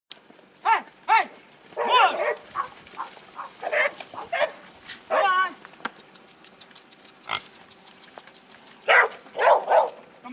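Blue heelers and horses calling while the dogs drive the horses: a string of short, sharp yips and squeals, about a dozen in all, with a close cluster near the end.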